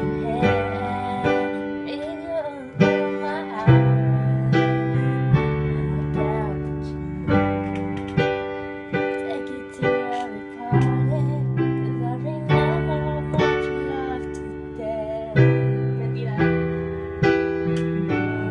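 Digital keyboard piano played live: full chords struck about once a second and left to ring, in a slow flowing progression.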